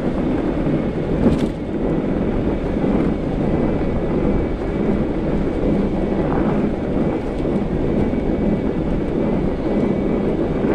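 Steady low rushing rumble of a fat-tire e-bike rolling on 45NRTH studded tires over packed snow, mixed with wind on the handlebar camera's microphone. A faint steady high whine runs through it, and a sharp knock comes about a second in as the bike jolts.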